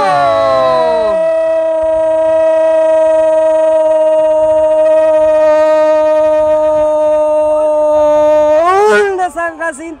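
A male football commentator's drawn-out goal cry, one "gooool" held at a single high pitch for about eight seconds, then wavering up and down and breaking off near the end.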